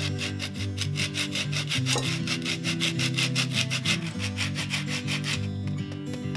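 An orange rubbed against a fine grater for zest: quick, even rasping strokes, about five or six a second, stopping near the end, over background music.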